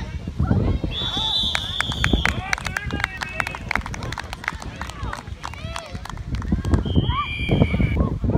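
Referee's whistle blown twice, a long steady blast about a second in and a shorter blast near the end, marking the play dead, over voices shouting from the sideline.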